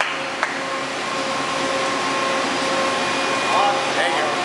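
Steady whirring hiss of machine-shop machinery or ventilation with a faint steady hum, a single sharp click about half a second in, and a brief voice near the end.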